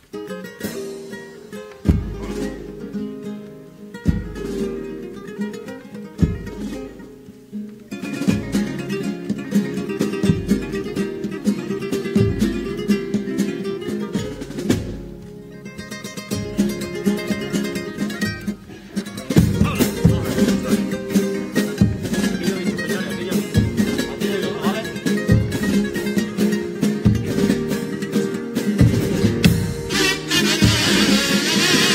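A carnival comparsa's Spanish guitars playing a flamenco-style instrumental opening. Deep drum strikes land about every two seconds near the start. The playing grows fuller from about eight seconds in and louder from about nineteen seconds.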